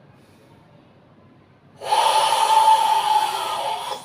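A long, forceful, hissing exhale of Sanchin kata breathing, pushed out from the throat with a hoarse edge. It starts about halfway in and lasts about two seconds.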